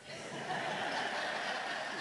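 Audience laughing together, the laughter swelling within the first half second and then holding.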